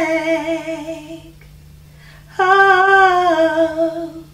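A woman's solo voice singing unaccompanied in two long, wordless phrases with vibrato. Each phrase slides down and ends on a held low note, with a pause of about a second between them.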